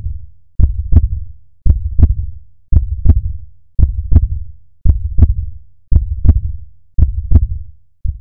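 Heartbeat sound effect: a steady lub-dub double beat, each pair a sharp knock followed closely by a second, over a low thump, repeating about once a second.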